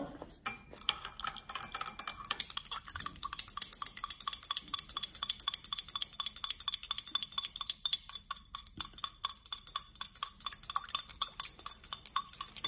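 Glass stirring rod clinking against the wall of a small glass beaker in quick, regular, ringing strokes, several a second, starting about half a second in: sodium hydroxide pellets being stirred to dissolve them in distilled water.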